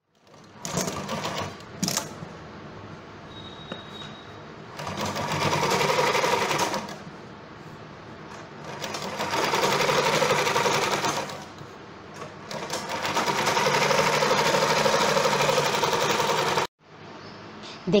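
Electric sewing machine stitching a seam in three long runs of a few seconds each, running quieter and slower in between, with a short burst near the start. It cuts off suddenly near the end.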